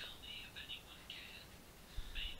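Faint whispering voice, in short broken stretches with pauses between them.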